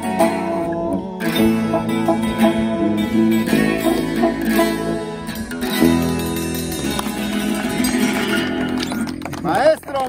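Live banda music without singing: a twelve-string acoustic guitar strummed over brass and drums. The music ends about nine and a half seconds in, and a man's voice calls out.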